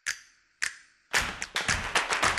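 Sharp percussive hits about two a second, each with a short decaying tail. Just after a second in, a loud, dense burst of crowd-like noise with quick clapping takes over.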